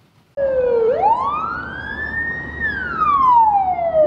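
Ambulance siren wailing, one slow rise to a high pitch and a slow fall, then starting to rise again near the end. It is very loud at the roadside, close to 100 dB on a sound level meter, with road traffic underneath.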